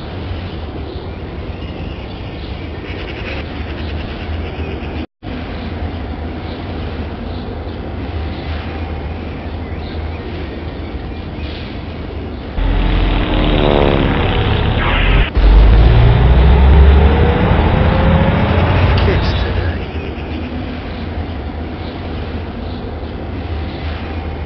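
Steady street-traffic ambience. About halfway through, a loud sound effect: a falling whistle drops in pitch for about two seconds, breaks off suddenly, and gives way to a loud low rumble with a slowly rising tone that lasts about four seconds before the ambience returns.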